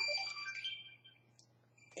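Chopsticks clicking and squeaking against a plastic takeout sushi tray for about a second, then quiet; a steady low electrical hum underneath.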